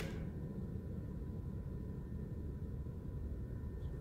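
Room tone between spoken lines: a steady low rumble with a faint thin high tone above it and no distinct events.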